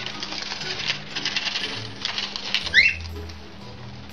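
Rosy-faced lovebird shredding paper with its beak: a quick run of crisp tearing and crinkling clicks as it cuts strips for nest material. About three seconds in comes one short gliding chirp, the loudest sound. Soft background music runs underneath.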